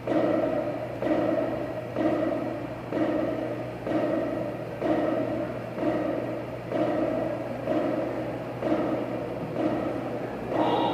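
A percussion band's bass drums beating a slow, steady pulse of about one stroke a second, each stroke ringing out in the hall before the next.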